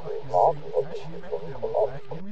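Speech: a voice heard thin and tinny, as through an old radio, with no words made out.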